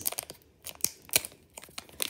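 Foil wrapper of a Pokémon TCG booster pack crinkling and tearing as fingers work it open: a scatter of short, sharp crackles, the loudest a little past a second in.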